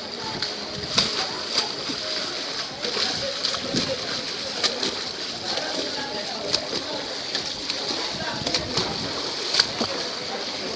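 Choppy sea water splashing and slapping around a swimmer, with irregular sharp splashes every second or two over a steady wash of water.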